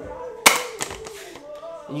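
Sigma 105mm f/1.4 lens hood being fitted onto the lens: one sharp plastic click about half a second in, then a few softer clicks and handling rattles.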